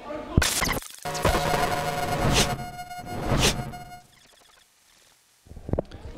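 A short musical transition sting with whooshing sweeps, ending about four seconds in.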